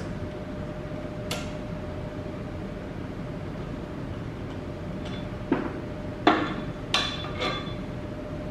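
Metallic clinks and knocks of a socket ratchet and steel mounting bolts against the engine brackets: one clink about a second in, then four sharper clinks close together near the end. Under them is the steady hum of a propane furnace running.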